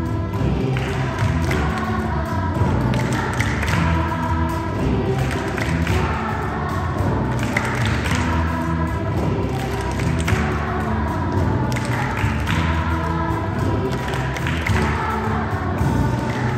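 Children's choir singing a song.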